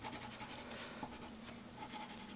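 Pencil scratching faintly on paper in short strokes, shading in squares of a puzzle grid.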